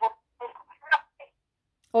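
A woman's voice over a phone line, thin and choppy, breaking into fragments as the call's signal drops out. It cuts off for about half a second before a clearer voice starts at the very end.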